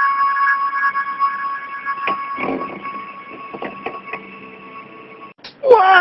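A steady electronic alarm tone that fades away over about five seconds, with a few faint clicks, then stops abruptly. A short, loud sliding tone follows near the end.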